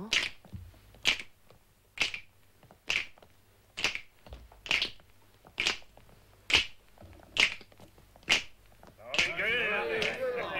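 Slow, evenly paced footsteps of high-heeled boots on a hard floor: sharp single clicks a little under a second apart, about ten in all. Near the end a babble of voices comes in.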